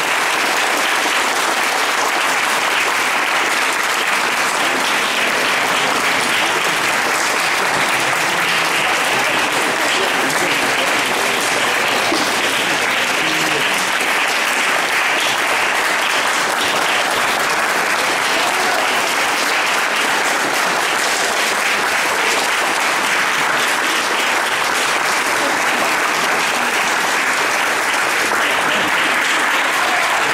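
An audience applauding steadily and without a break, a long ovation for a performer's bows.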